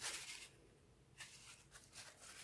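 Faint rustling of a cloth as fingers are wiped clean of wet clay, in two short spells with a quieter gap between.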